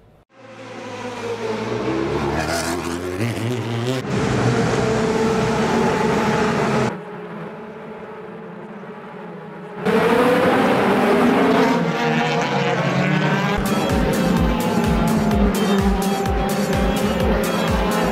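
Racing touring cars' engines revving hard and shifting up through the gears, under music. The engine sound drops away for a few seconds mid-way and then returns loud, and a steady music beat comes in near the end.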